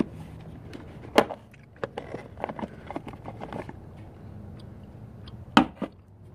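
The plastic lid of a Honda Prelude's fuse box being unclipped and lifted off: a series of sharp clicks and knocks, with one loud snap about a second in and two more near the end.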